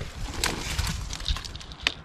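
Footsteps and rustling through dry, fallen screw-pine leaves and brush, with scattered crackles and a sharp snap just before the end.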